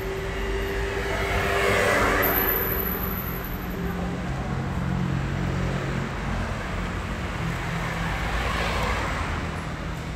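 Road traffic on a rain-wet street: vehicles drive past over a steady low engine hum. One swells past about two seconds in, the loudest moment, and another near the end.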